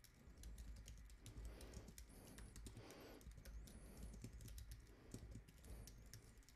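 Faint typing on a computer keyboard: a quick, uneven run of keystrokes entering a command at a terminal.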